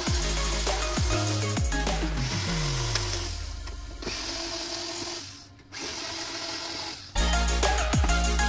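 Electronic drum-and-bass music that thins out for a few seconds in the middle, where a cordless drill-driver whirs, driving screws on the monitor's sheet-metal cover, with a brief pause about five and a half seconds in; the full beat returns near the end.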